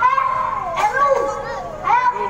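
A child's voice, loud and amplified through a handheld stage microphone.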